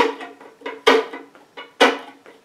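Violin chop strokes: the bow is struck hard near the heel, giving scratchy percussive hits about once a second with lighter strokes between, played as a drum beat on the fiddle.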